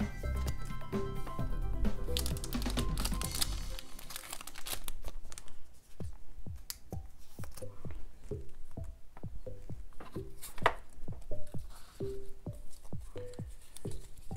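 Thin plastic card sleeves crinkling and rustling as Pokémon trading cards are slid into them, a long irregular run of crackles and clicks from about four seconds in.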